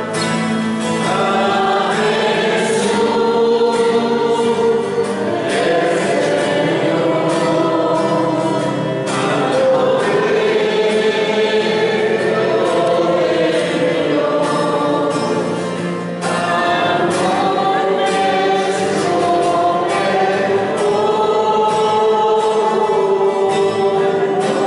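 A choir of voices singing a slow Christian hymn in long held phrases, with brief breaths between phrases.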